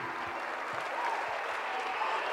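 Concert audience applauding after the song ends: a soft, steady patter of clapping.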